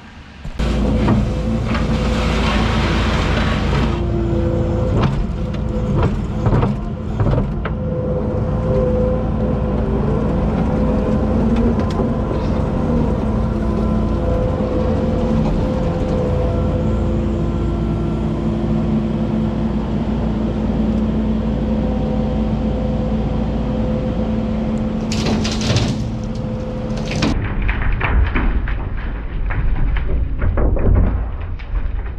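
Skid steer's diesel engine running loud and steady under load, with a steady hydraulic whine, while it scoops excavated soil and dumps it into a steel dump-truck bed. About 25 seconds in there is a short loud rush, fitting the load of dirt pouring into the bed.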